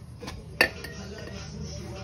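A single sharp metallic clink about half a second in, over a steady low hum.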